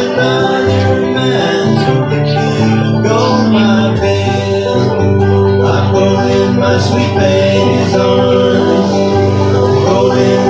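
Live bluegrass instrumental on acoustic guitar and banjo: the guitar strumming chords under steady picked banjo, with no singing.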